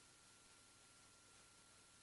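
Near silence: a faint steady hiss with a thin, steady high tone.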